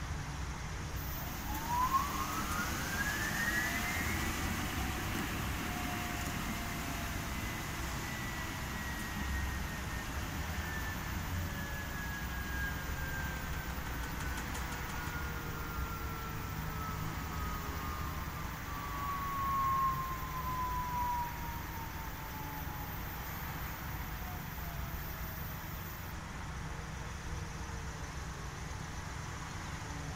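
Commercial front-loading washing machine in its spin: a motor whine rises sharply in pitch over the first few seconds, then glides slowly down over about twenty-five seconds as the drum's spin winds down, over a steady low rumble.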